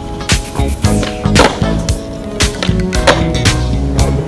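Skateboard on smooth concrete: the wheels roll and the board pops and lands with sharp clacks. Under it runs a hip-hop music track with a beat.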